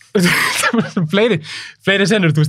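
A man talking at close range into a studio microphone, with a short harsh throat-clearing sound just after the start.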